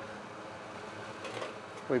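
Steady hum and whoosh of a small demonstration blower fan running, pushing air up through a bin of wheat.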